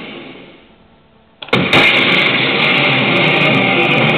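Evangelion pachislot machine's sound fades away, then about a second and a half in its loud bonus music cuts in suddenly and plays on steadily, after a bonus has been lined up on the reels.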